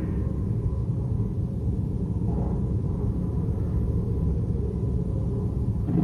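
Steady low rumble of a large chamber's room noise, with faint, indistinct murmuring of voices a couple of times.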